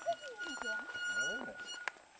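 Faint voices of several people a little way off, with a thin steady high tone that holds one pitch for nearly two seconds and cuts off near the end.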